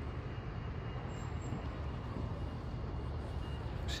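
Steady low rumble of distant road traffic, with a faint steady high whine running through it.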